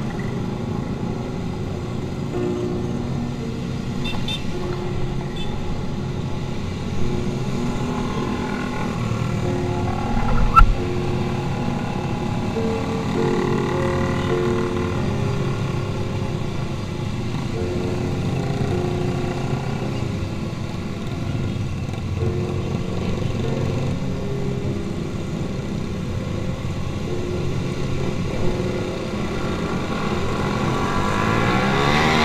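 Motorcycle engines of a group ride, heard from a moving motorcycle in traffic: a steady drone of several engines whose pitch steps up and down with the throttle. A single sharp knock stands out about ten seconds in.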